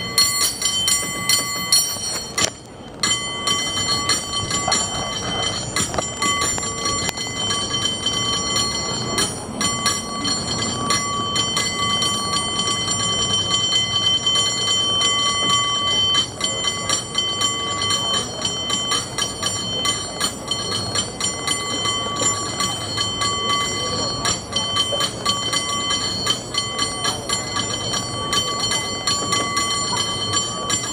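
San Francisco cable car bell rung by hand in fast, rhythmic contest patterns, a bright ringing tone sustained between the strikes. There is a short break in the ringing about two and a half seconds in.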